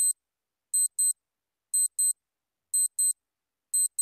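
Countdown-timer clock-ticking sound effect: a pair of quick, sharp ticks once every second, with silence between.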